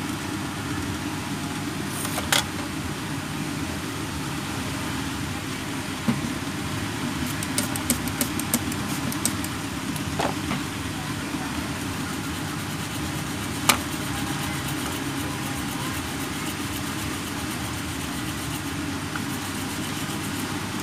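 Steady background hum and hiss, with a few sharp clicks and a short run of light ticks as small plastic phone parts are handled on a workbench.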